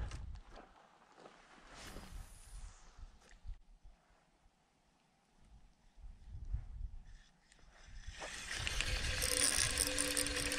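A spinning reel being cranked steadily near the end, a whirring with fine ticking and a faint steady whine. Before it come faint handling knocks and a moment of dead silence where the glitching camera's audio drops out.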